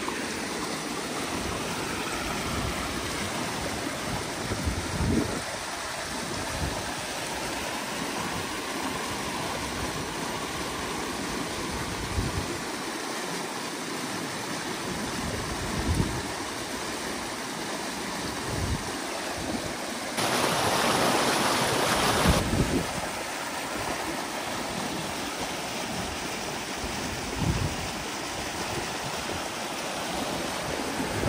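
Muddy water rushing steadily through a breach in a drained beaver dam and down a ditch, with a few brief low thumps. About two-thirds of the way through, the rush turns louder for about two seconds.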